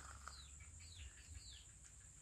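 Faint bird chirps, three short falling whistles about half a second apart, over near silence.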